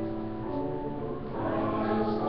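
Small church choir singing held notes; the voices grow louder about a second and a half in.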